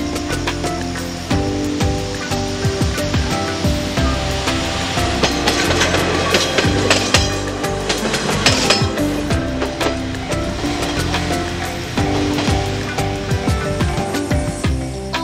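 Background music plays throughout. In the middle, a Kanto Railway KiHa 5020-series diesel railcar passes close by, a rush of wheel-on-rail noise with a run of clicks.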